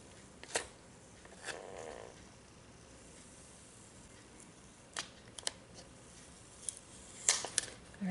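Quiet hand-handling of a ceramic mug: a few scattered light clicks and taps, with a short rustle about one and a half seconds in and a quick run of clicks near the end.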